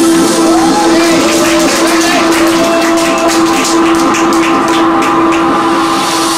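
Deep house music played by a DJ through club speakers, in a sparse stretch: a long held synth tone with short gliding notes above it over ticking hi-hats, with little bass.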